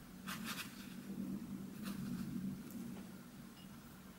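Watercolour brush stroking across watercolour paper: a few short, faint, scratchy strokes, a cluster about a third of a second in and more around two seconds in, over a low steady hum.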